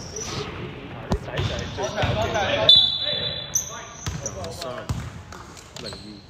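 Basketball bouncing on a hardwood gym floor, a few sharp knocks echoing in a large hall, with voices on the court and a brief high-pitched squeak about three seconds in.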